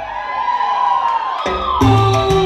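Salsa music for a dance routine, at a break: the bass drops out while a sliding tone rises, then the bass and the full band come back in about a second and a half in.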